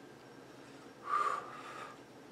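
A man exhales e-cigarette vapour, at first almost without sound. About a second in comes one short, audible breath lasting under a second, with a faint whistle in it.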